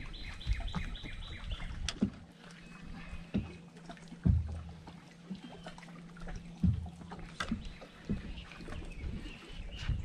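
Scattered knocks and thumps of gear being handled on a fiberglass bass boat's front deck, the loudest about four seconds in, with a steady low hum through the middle few seconds.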